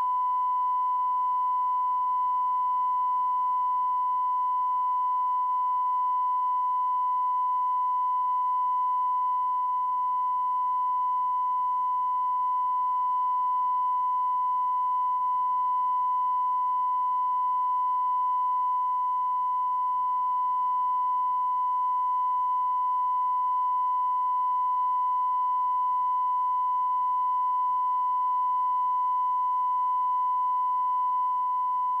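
Steady electronic test tone at one unchanging pitch, unbroken throughout: the line-up reference tone recorded at the head of a broadcast tape.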